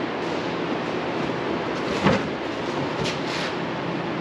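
Steady shop background noise, a constant even rush of machinery or ventilation, with one short knock about two seconds in.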